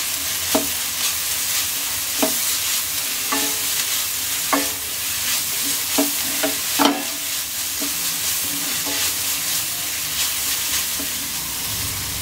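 Mint leaves, onion and freshly added ginger-garlic paste sizzling in a non-stick pan while a wooden spatula stirs them, knocking and scraping against the pan about once a second, loudest about seven seconds in.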